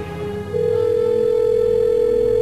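Telephone ringback tone: one steady ring starting about half a second in and holding for about two seconds, the sign of an outgoing call ringing through on the other end.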